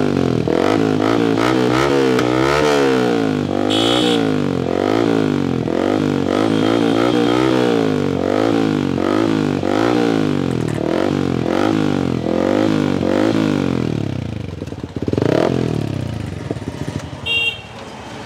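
Yamaha MT-15's single-cylinder engine running through an aftermarket full exhaust with bend pipe and carbon-look twin-outlet muffler, revved in a fast run of repeated throttle blips. Near the end it is given one bigger rev that falls back toward idle.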